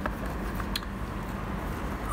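Steady low background hum with two light clicks about three-quarters of a second apart, as a small hot-glue-gun nozzle and heating-element assembly is handled.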